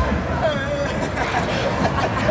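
Street ambience of road traffic running past, mixed with a hubbub of nearby voices and laughter.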